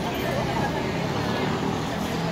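Busy street ambience: indistinct voices of passers-by over a steady low hum of traffic.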